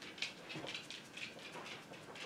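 Faint, irregular rustling and rubbing of fingertips over eyeshadow swatches on the skin of a forearm, with the hoodie sleeve brushing along.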